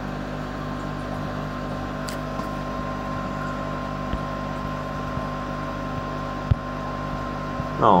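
Steady mechanical hum of a four-fan aquarium cooling unit running over the water surface, holding a few constant tones. There is one small click near the end.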